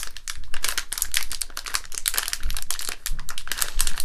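Plastic Lego minifigure blind-bag packet crinkling as it is handled and squeezed in the hands: a dense run of sharp crackles.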